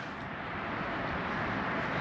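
Steady outdoor background noise, an even hiss that builds slightly over the two seconds.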